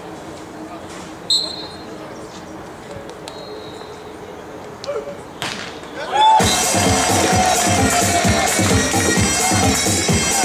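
A referee's whistle sounds briefly about a second in, and a sharp hit on the ball follows about five seconds in. From about six seconds, loud stadium PA music with a steady beat starts up once the point is won.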